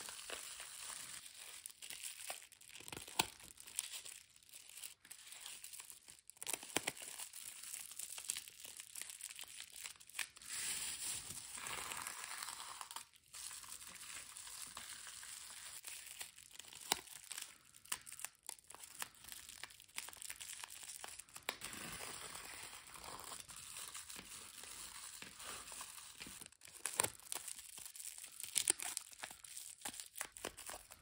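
Plastic bubble wrap crinkling and rustling as it is rolled around small crystal towers, with scattered light clicks.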